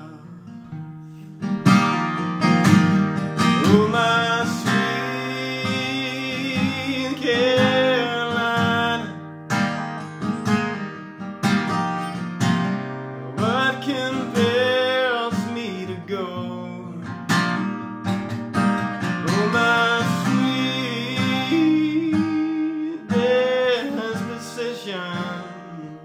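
Steel-string acoustic guitar, a Nimskov L1 custom, strummed and picked through a song, with a man's singing voice over it. It comes in fully about a second and a half in.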